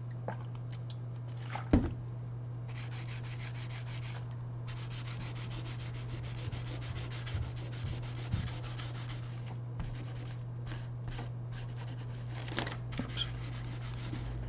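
A cloth rubbing back and forth on a laptop's plastic screen bezel to wipe off leftover glue: long steady stretches of rubbing, then shorter strokes. A single sharp knock comes a little under two seconds in, over a steady low hum.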